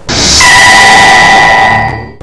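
TV programme title sting: a sudden loud rush of noise, joined about half a second in by a held chord of bright steady tones, fading out near the end.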